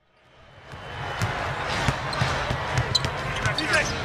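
Basketball being dribbled on a hardwood court, about three bounces a second, fading in over the first second, with short high sneaker squeaks near the end over steady arena crowd noise.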